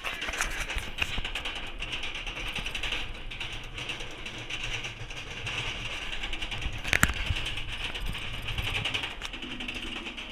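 Roller coaster lift hill: chain and anti-rollback ratchet clattering in a rapid, steady run of clicks as the train climbs, with one louder clack about seven seconds in.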